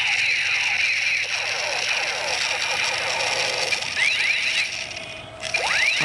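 Battery-powered light-and-sound toy gun playing its electronic sound effect: a steady high electronic tone with quick sweeping tones rising and falling over it. The sound dips briefly about five seconds in.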